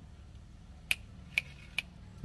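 Three short, sharp clicks about half a second apart, over a faint low hum.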